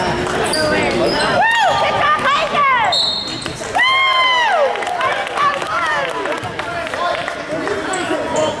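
Gymnasium sounds of a youth basketball game: spectators yelling and cheering in high-pitched shouts, loudest about four seconds in, over a basketball bouncing on the hardwood court. A short referee's whistle blast sounds about three seconds in.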